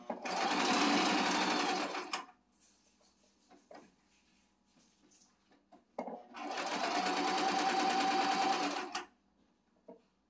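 Singer electric sewing machine stitching in two steady runs, one of about two seconds at the start and one of about three seconds from about six seconds in. Between them it stops, and only a few faint clicks are heard.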